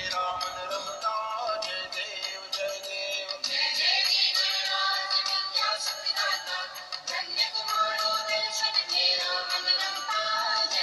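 Background music from a Hindi devotional song to Ganesha: a melodic line over a busy, bright accompaniment.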